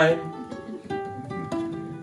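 Ukulele playing plucked single notes that ring on between sung lines; a sung word trails off right at the start.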